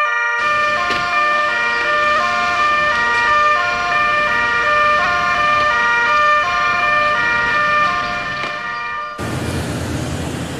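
Two-tone ambulance siren, switching back and forth between two notes. Near the end it cuts off abruptly, giving way to street traffic noise.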